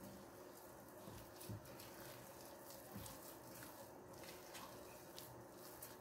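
Very quiet, faint squishing and light knocking of a hand mixing soft dough in a glass bowl, with a couple of soft thumps.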